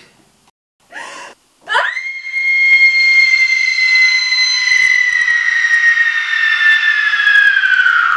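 A short sharp breath, then a long, loud, high-pitched human scream that sweeps up and holds for about six seconds, sagging slightly in pitch near the end.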